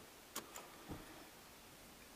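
Two or three faint clicks in the first second as the Nissan's ignition key is turned to the on position, with no engine cranking; otherwise near silence.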